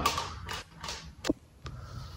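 A few light taps and knocks from a small plastic desk fan being handled, the sharpest a little past halfway.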